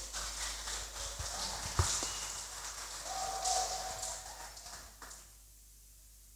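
Faint room noise after the music has stopped, with a few soft knocks, the loudest about two seconds in, and a brief faint tone near the middle; it fades out about five seconds in.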